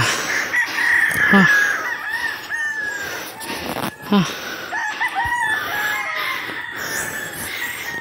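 Roosters crowing: long wavering crows, one from soon after the start to about three seconds in and another around the middle. A tired man's breathy 'ha' exhales come twice between them.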